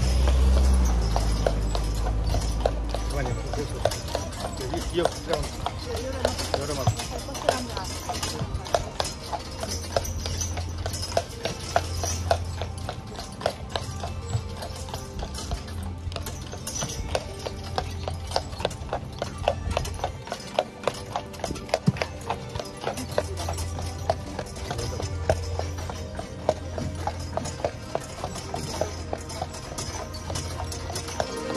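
A carriage horse's hooves clip-clopping at a steady walk on a paved road.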